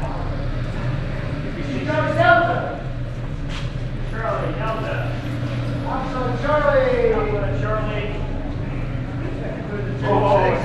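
Indistinct men's voices talking in short spells over a steady low hum, with footsteps on a concrete floor.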